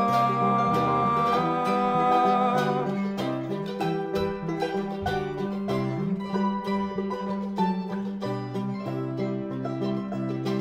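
Acoustic folk trio playing an instrumental passage on banjo, acoustic guitar and mandolin, picked notes in a steady rhythm.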